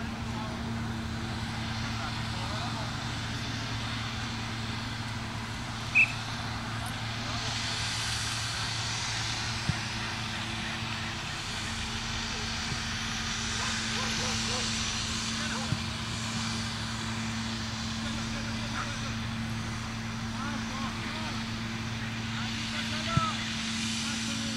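Open-air sound of an amateur soccer match: distant players' voices and a few sharp knocks of the ball being kicked, over a steady low hum. One loud short high-pitched call comes about six seconds in.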